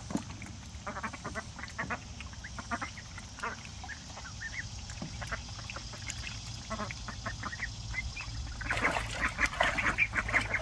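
Domestic ducks, runner ducks among them, quacking in short, repeated calls. Water splashes louder near the end as they play in the pool.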